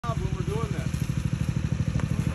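Small engine running steadily with a rapid, even pulse, the power unit that feeds the hydraulic rescue spreader through its hose. A voice speaks briefly at the start.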